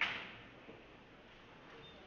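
A single sharp snap or knock right at the start, fading out over about half a second, followed by faint background noise.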